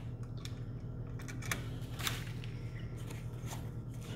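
A few faint clicks and rustles of hands bending a copper wire and handling a plastic wall receptacle, over a steady low hum.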